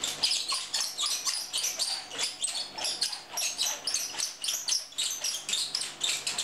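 Cord-strung wooden roller massager rolled back and forth around a bare heel, its wooden rollers clattering in quick repeated strokes, about three a second.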